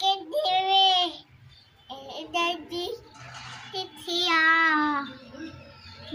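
A toddler's high-pitched, sing-song vocalizing: three drawn-out calls of about a second each, with pitch sliding up and down.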